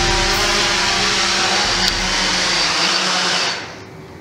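Small quadcopter drone's electric motors and propellers running with a steady whir, fading away near the end.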